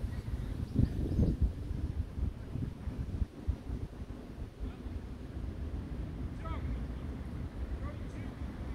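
Wind buffeting the microphone, a low rumble that gusts harder about a second in, with faint distant voices.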